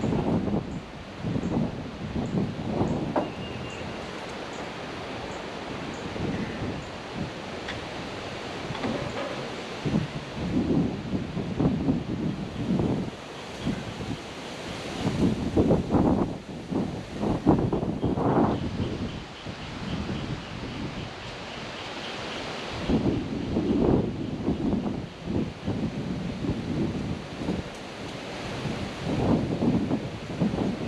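Wind gusting across the camera microphone, a blustery noise that rises and falls irregularly and is strongest about halfway through.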